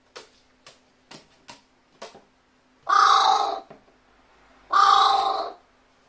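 Carrion crow giving two loud, harsh caws about two seconds apart, the fuss of a pet crow agitated by a metal tumbler held up to it. A few short sharp ticks come in the first two seconds.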